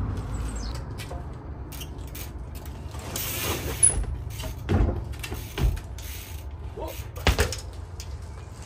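Trials bike tyres and frame knocking on wooden pallets: a few sharp thuds, starting about four seconds in, as the bike is hopped up onto a pallet step and dropped back down.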